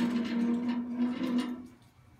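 A table being slid across the floor, its legs scraping with a steady low tone that stops shortly before the end.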